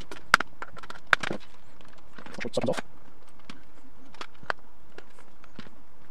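Clicks and knocks from handling the hard plastic case of a jump starter while its screws are being taken out. There are two sharp clicks within the first second or so, then lighter scattered ticks as the unit is turned over.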